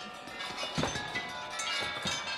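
Orchestral chimes (tubular bells) jangling and ringing, several metallic tones struck in quick succession.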